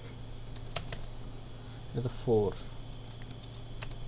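A few separate computer keyboard key presses, sharp single clicks spaced out irregularly, as a number is typed into a field.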